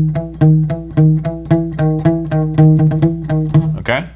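Acoustic guitar picking one low note over and over, about three to four strokes a second, each note muted and cut short. The picking stops just before the end with a brief squeak of the strings.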